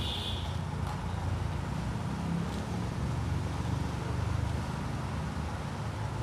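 Steady low engine rumble from road-work machinery, with a brief high hiss in the first half second.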